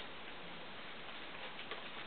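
Low, steady recording hiss with a couple of faint soft ticks about a second and a half in.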